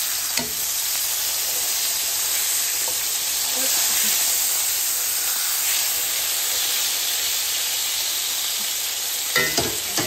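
Beef burger patties frying with a steady sizzle. A sharp knock comes shortly after the start, and a few louder knocks come near the end.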